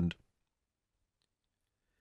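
Near silence: a man's narrating voice trails off in the first fraction of a second, then nothing.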